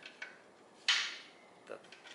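A short metallic clink about a second in, with a few faint clicks before it, as metal exhaust hardware is handled at the catalytic converter flange while a flange bolt is taken out.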